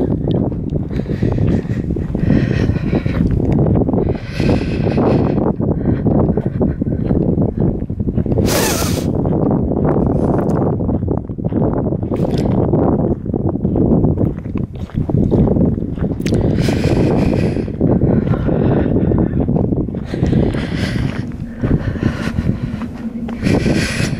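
Wind rumbling steadily on the microphone, with the walker breathing out hard every few seconds while climbing a steep hill track.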